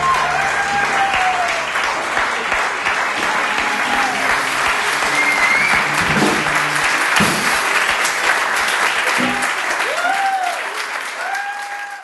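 A small seated audience applauding, with scattered cheering voices, at the end of an acoustic performance. It fades out near the end.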